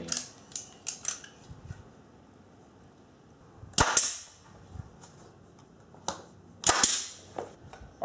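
Pneumatic nail gun firing twice, about three seconds apart, driving nails through a 3/4-inch pine framing strip into plywood: each shot a sharp crack followed by a short hiss of exhaust air. A few light clicks come in the first second.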